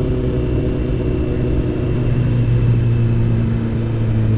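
Honda CBR600's inline-four engine cruising steadily on the road, its tone a little stronger about halfway through.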